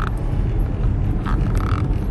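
Steady low road and engine noise inside the cabin of a car being driven.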